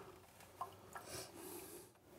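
Near silence with faint glassware sounds: a couple of light clinks and a soft short pour of a splash of whiskey into a glass.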